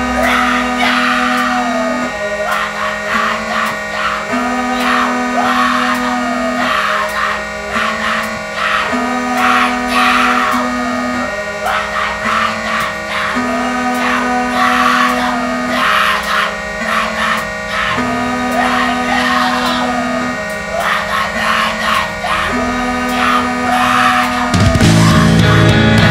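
Emo/screamo band recording in a calmer stretch: guitar playing a repeating figure over held bass notes, with drums keeping time.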